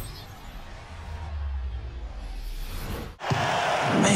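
Logo-sting sound effect: a low rumbling swell that breaks off sharply about three seconds in. It gives way to arena crowd noise from an old TV broadcast.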